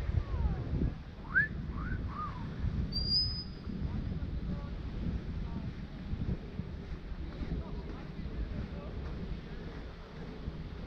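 Wind buffeting the microphone on an open beach as a low, steady rumble, with faint voices in the first couple of seconds and one short high whistle about three seconds in.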